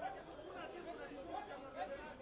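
Faint chatter and calls of several voices overlapping, from players and spectators around a football pitch.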